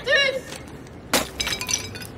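Glass breaking: a picture frame hits the pavement about a second in with one sharp crash, and the broken glass tinkles briefly after. A short shout at the very start.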